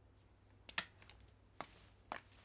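Faint footsteps on a staircase: a few sharp, separate steps in the second half.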